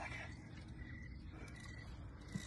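Faint outdoor night ambience: a low, even rumble with a thin, high chirping call that breaks off and returns several times, like night insects calling.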